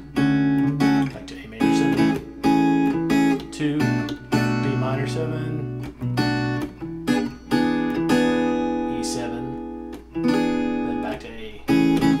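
Gretsch hollow-body electric guitar strumming a chain of chords, a new chord every second or two, some left to ring out for a couple of seconds. The chords are diatonic chords in A major, played as a key-drilling chord progression.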